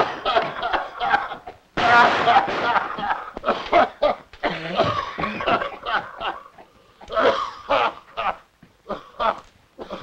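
Several men coughing and choking hard from tear gas, in irregular fits that thin out over the last few seconds.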